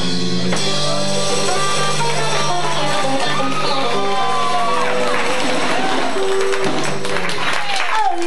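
A live country-rock bar band with electric guitar, bass, drums and tambourine playing the closing bars of a song: a long held chord with a voice sliding over it, then cheering and clapping from the crowd coming in over the music in the later part.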